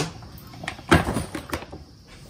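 A few short knocks and clatters of kitchenware being handled on a metal counter, the loudest about a second in.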